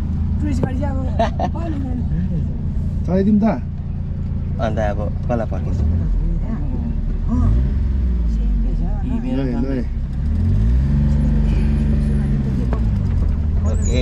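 Small car's engine heard from inside the cabin, running low at first, then rising in pitch as the car pulls away, with one clear rev up and back down a little past the middle.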